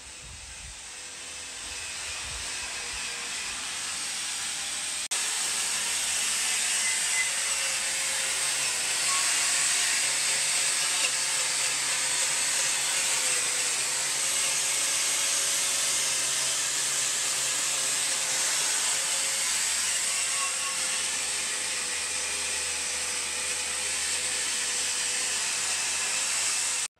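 Electric angle grinder stripping rust and paint from the steel inside of an armoured recovery vehicle's hull: a steady grinding hiss over a motor whine. It grows louder over the first several seconds, then holds steady.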